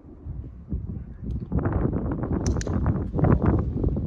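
Wind buffeting the microphone: a rough, crackling rumble that builds up and is loudest in the second half, with a couple of sharp clicks near the middle.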